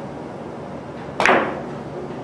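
A single sharp crack about a second in, as a carom billiards shot is played: the cue tip strikes the cue ball, which hits the first object ball at once. The crack fades briefly in the room.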